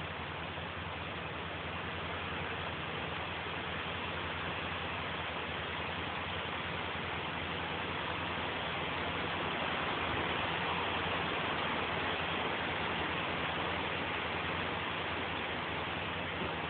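An engine running steadily, with a low hum under an even hiss and no knocks or changes in speed.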